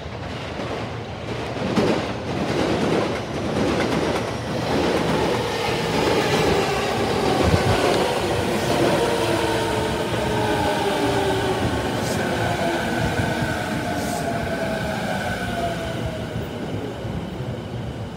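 JR Nambu Line E233-series electric commuter train pulling in alongside a platform. Its wheels clack over rail joints as it comes in, then its motors whine in a tone that falls steadily in pitch as it brakes towards a stop.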